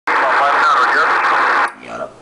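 Shortwave transceiver receiving single-sideband on the 20-metre band: a loud, dense wash of static and overlapping signals filling the voice range, which cuts off abruptly near the end, leaving a fainter voice coming through.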